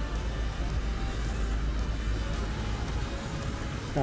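Outdoor street ambience: road traffic with a steady low rumble, and music faintly underneath.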